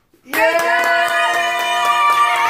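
Several voices start a long, held cheer about a third of a second in, over fast clapping.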